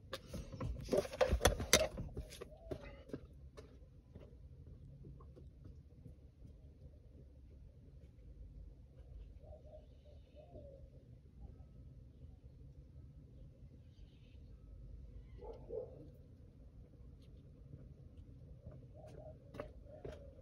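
A few knocks and clicks in the first couple of seconds, then the faint, steady low hum of the 2004 Toyota Camry's engine idling, heard from inside the cabin, just after a new mass air flow sensor was fitted.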